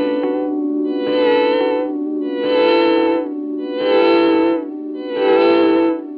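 Electric guitar played through a Red Panda Raster 2 digital delay pedal: a held chord with echoes that swell up brightly and fade about every one and a half seconds.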